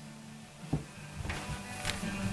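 Music playing faintly from an old hi-fi's speakers in another room, streamed over Bluetooth from a phone about 8 metres away. The faint, steady playback shows the Bluetooth link is still holding at that range.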